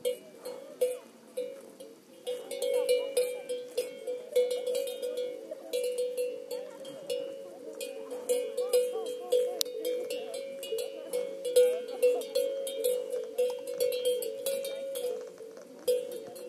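Cowbells clanking in an irregular, continuous jangle, with a sustained ringing tone underneath.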